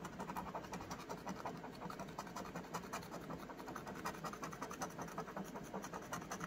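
A round coin-like scratcher scraping the scratch-off coating from a lottery ticket in rapid, short back-and-forth strokes.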